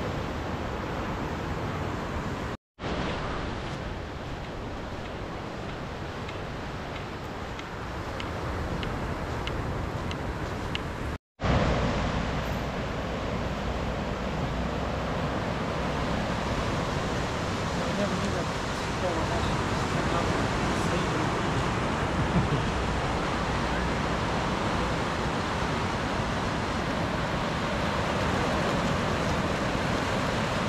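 Ocean surf washing in over a lava-rock shore as a steady rush, with wind on the microphone. The sound drops out twice, briefly, in the first half.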